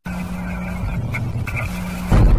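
Intro sound effect: a steady rushing noise with a low hum under it, starting just after a short silence and giving way to music at the end.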